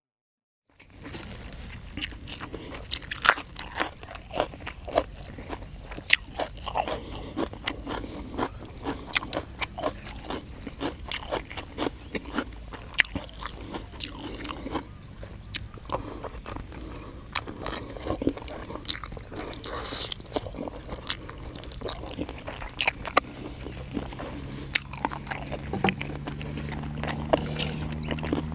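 A man chewing and crunching a meal of rice noodles in green curry with raw vegetables and chicken feet, heard close up: many sharp, irregular crunches. It begins after a brief silence about a second in.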